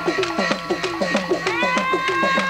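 Dance music with a drum playing a fast, even beat of about seven strokes a second, each stroke dropping in pitch. A high melody runs over it and settles into a long held note about one and a half seconds in.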